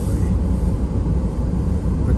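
Steady low rumble of a car heard from inside its cabin as it moves slowly.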